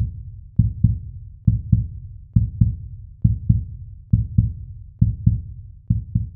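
A heartbeat sound effect: paired low lub-dub thumps repeating evenly, a little more than once a second.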